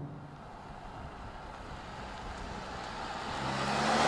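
Low, steady road noise, then a car approaching: a Mercedes-AMG C43's turbocharged four-cylinder engine and tyres grow louder near the end.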